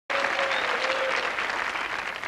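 Studio audience applauding, a dense steady clatter of clapping that starts abruptly, with a faint held tone heard through it for about the first second.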